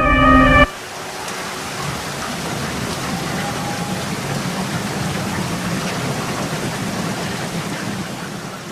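Pop song music stops abruptly under a second in, leaving a steady hiss of falling rain.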